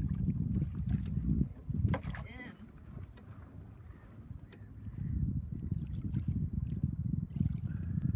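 Wind buffeting the microphone outdoors over open water: a low rumble that rises and falls, easing off in the middle and picking up again after about five seconds. A few faint clicks and a brief high voice come through about two seconds in.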